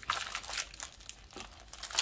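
Clear plastic sleeve of a planner sticker pack crinkling as it is handled, a few light crackles that thin out after the first second.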